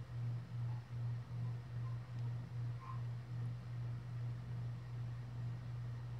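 A low hum that swells and fades in loudness a little over twice a second, with nothing else standing out.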